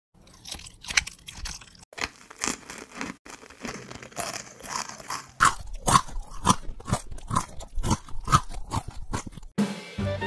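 Close-up crunchy bites and chewing of food: a run of sharp crunches, irregular at first, then louder and coming about twice a second from about halfway through.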